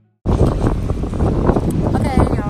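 Loud wind noise buffeting a phone's microphone outdoors, a deep, ragged rush that cuts in abruptly about a quarter of a second in.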